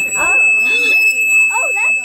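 Aluminum rod stroked along its length so that it resonates, giving a loud, steady, high-pitched ring. The rod is being forced to vibrate at its own natural frequency.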